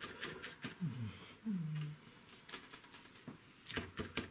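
Stiff bristle brush dabbing acrylic paint onto gessoed paper: a handful of soft, scattered taps, with two short low hums from the painter between one and two seconds in.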